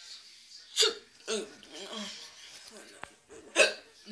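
A person's voice making two short, sharp, loud sounds, one about a second in and one near the end, with brief quieter voiced sounds between them.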